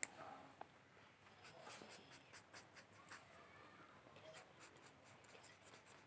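Faint scratching of a pen on paper: short strokes in quick runs as lines are drawn and shaded.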